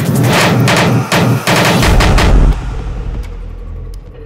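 Hardcore techno at 170 BPM: a rapid-fire barrage of distorted percussive hits, sounding like machine-gun fire. About two seconds in, a deep bass comes in, the hits drop away and the track falls into a quieter breakdown.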